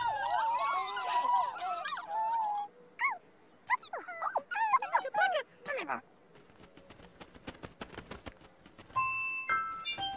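High, squeaky cartoon character voices chattering and exclaiming in gliding, sing-song tones, dense at first and then in scattered calls. A quick run of clicks follows for about two and a half seconds, and plain bell-like music notes begin near the end.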